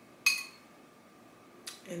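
A metal spoon clinks once against a glass bowl about a quarter second in, with a short ring. A voice starts near the end.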